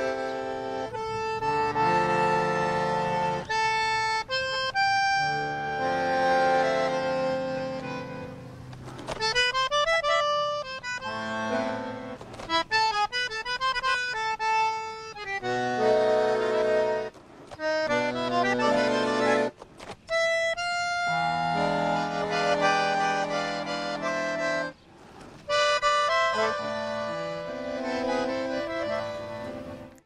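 A solo bandoneón, a vintage instrument of a kind built only until 1939, playing tango. It moves between held chords and fast runs of notes, with a few brief breaks, and cuts off abruptly at the very end.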